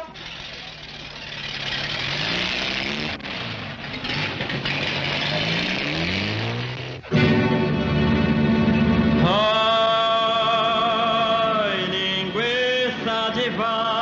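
Film soundtrack: for the first half, a noisy rumble whose low pitch slowly rises and falls, like a motor vehicle running. After a sudden change about halfway through, a deep drone gives way to loud, long held musical tones with a wavering pitch.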